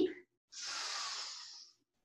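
A person's deep breath in, a smooth airy inhale starting about half a second in and lasting about a second, fading toward its end.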